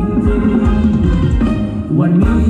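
Thai ramwong dance music from a live band, with the drums and percussion to the fore.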